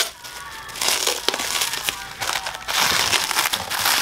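Plastic bubble wrap crinkling and rustling irregularly as hands handle it and pull it off a heavy flywheel.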